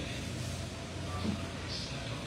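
A low, steady background hum with a faint haze over it.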